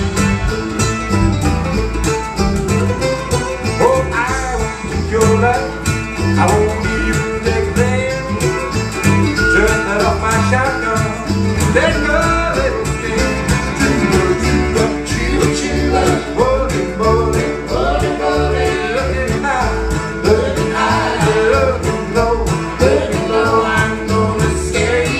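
Acoustic folk band playing live at a steady beat, with harp, acoustic guitar, a mandolin-family instrument and upright bass.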